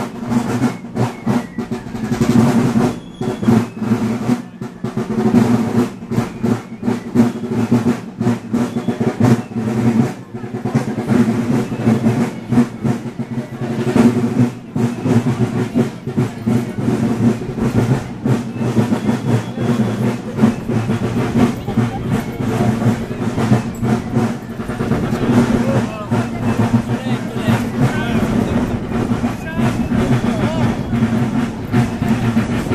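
Marching band of snare drums and brass playing a march, the drums beating rolls, with crowd voices mixed in.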